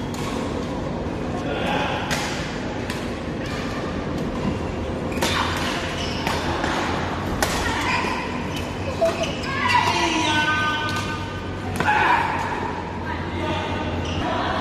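Badminton rally: a string of sharp racket strikes on a shuttlecock at irregular intervals, echoing in a large hall, with players' voices and calls around them.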